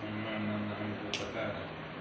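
A low, faint voice murmuring or humming in short pieces, with a single sharp click about a second in.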